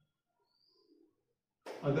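A pause in a man's lecturing: near silence with a faint, brief sound about a second in, then his voice resumes near the end.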